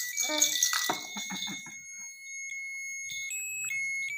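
A battery-powered electronic baby toy sounds thin, steady electronic tones that step to a new pitch a few times; its batteries are running low. In the first second and a half a plastic toy is shaken with a rattle.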